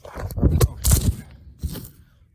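Dry sticks and forest litter crunching and scraping in a quick cluster over the first second or so, with one more crunch near the end.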